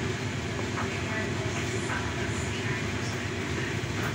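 A steady low background rumble, with faint soft knocks of banana slices being dropped into a blender cup.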